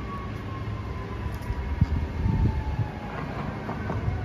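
Road traffic on a busy city street: a steady low rumble of passing cars, with a faint tone that falls slowly in pitch and a knock about two seconds in.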